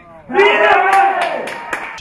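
Shouting and cheering voices celebrating a goal just scored, breaking out suddenly about a third of a second in and dying away over a second and a half.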